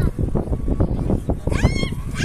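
A young girl's brief high-pitched squeal about one and a half seconds in, as she sets off down a plastic playground slide, over a low rumble.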